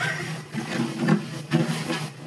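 A person's voice, rising and falling in short broken stretches.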